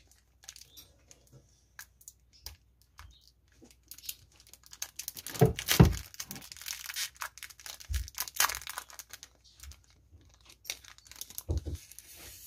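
Clear plastic packaging crinkling and crackling as it is pulled open by hand to free a stack of paper refill sheets, in irregular bursts with the loudest crackle about halfway through.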